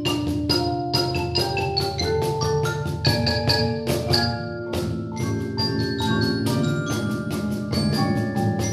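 Percussion ensemble of marimbas and other mallet keyboard instruments playing a fast, rhythmic piece, many struck notes ringing over sustained low tones. A brief break about halfway through before the playing picks up again.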